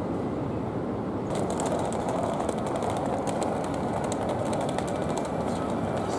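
Steady road-traffic noise from cars moving through a city street crossing, with faint, irregular high ticking from about a second in.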